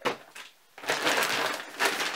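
A shopping bag rustling and crinkling as a hand rummages in it and draws out the next item: a brief rustle at the start, a short pause, then steady crinkling from about a second in.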